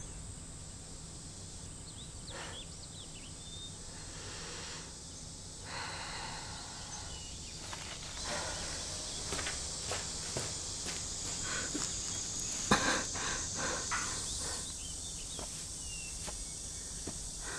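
Quiet outdoor night ambience with a few faint chirps and a high steady hiss. Footsteps and scuffs on dirt and grass come in the second half, with one sharper knock about three-quarters through.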